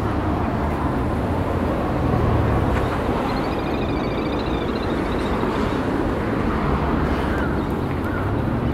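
Steady city traffic noise with a low hum. About three and a half seconds in, a faint high wavering sound runs for a second or so.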